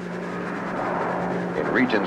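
Aircraft engines droning steadily in flight, heard from the cockpit: a steady low hum that swells up during the first second and then holds.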